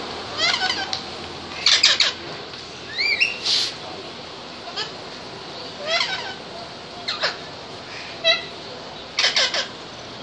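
Birds calling in the trees: short bursts of arching chirps and harsh squawks every second or two, over a steady background noise.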